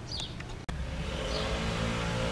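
A distant lawn mower engine running steadily, a low drone with a faint pitch that comes through more clearly after a sudden edit about two-thirds of a second in.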